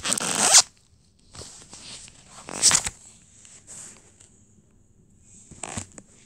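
Handling noise: short rubbing and scraping noises as a phone is moved against clothing. There is a loud burst at the start, a shorter one about two and a half seconds in, another just before the end, and faint scuffs in between.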